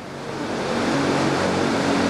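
A crowd of listeners reacting with a loud, steady wash of many voices together, swelling up in the first half second.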